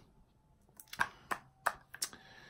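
A few light, sharp clicks, about five of them spread over the second half, with quiet room sound between.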